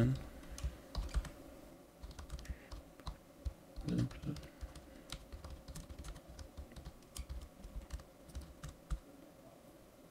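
Typing on a computer keyboard: a run of quick, irregular key clicks, thinning out in the last second.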